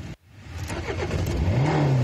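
Car engine revving, growing steadily louder after a brief dropout to silence at the start, with one rev rising and then falling in pitch near the end.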